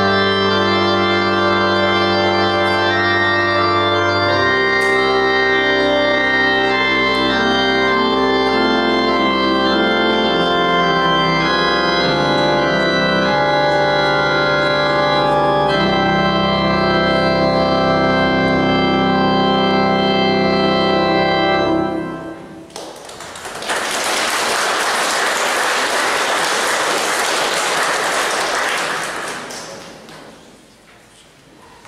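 Organ playing sustained chords, closing a piece, followed by several seconds of audience applause that dies away near the end.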